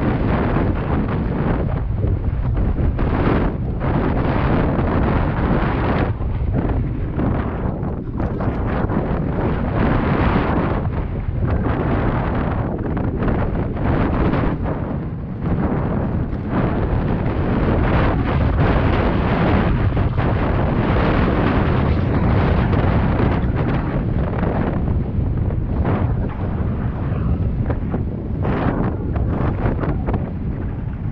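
Wind buffeting a helmet-mounted camera's microphone during a mountain-bike descent on a dirt trail: a loud, uneven rush strongest in the low end, broken by short knocks from the bike over the rough ground.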